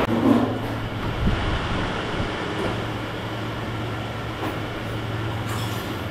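Steady low mechanical hum over a faint even background noise, the hum stopping abruptly just before the end.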